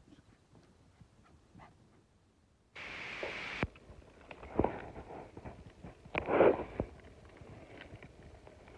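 Terrier pups scrambling over a pile of dead branches: dry sticks crackling and snapping under their feet, loudest about six seconds in. A short burst of hiss about three seconds in.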